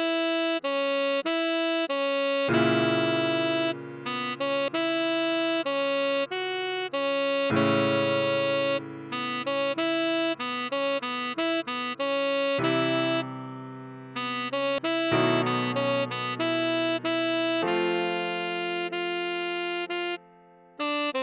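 A tenor saxophone plays a melody note by note over sustained piano chords that change every few seconds.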